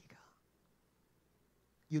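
A pause in a man's amplified speech: a soft breathy trail at the very start, then near silence, then his voice starts again just before the end.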